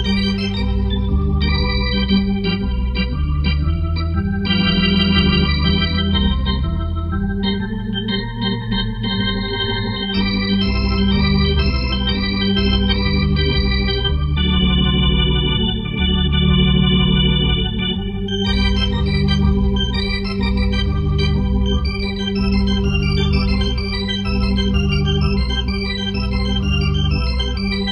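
Organ music played through a homemade Leslie rotating-speaker cabinet built from genuine Leslie parts, its bass drum rotor turning: sustained chords over a moving bass line, with one long held chord midway.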